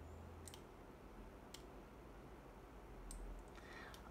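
A few sparse, sharp computer mouse clicks, about four, spaced roughly a second apart, over quiet room tone.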